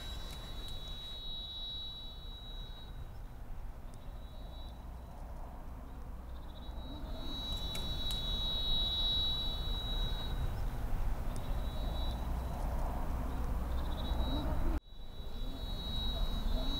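Outdoor ambience: a steady low rumble of wind or distant traffic, with high, thin buzzing tones that come and go in stretches. The sound cuts out for an instant near the end.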